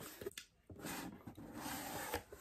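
Cardboard mailer box being opened: a few light ticks, a short pause, then a steady rubbing and scraping of cardboard as the lid flap slides free and lifts, starting just under a second in.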